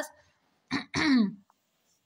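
A person clearing their throat once, about a second in: a short rasp, then a voiced 'ahem' falling in pitch.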